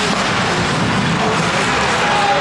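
Steady noisy din of an ice hockey rink during play, with faint knocks from the ice.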